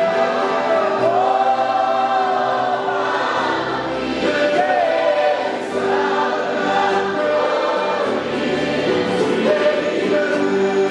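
A group of men singing a gospel worship song together, with acoustic guitars strummed along.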